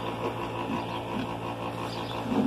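A steady low hum with a row of even overtones, unchanging throughout.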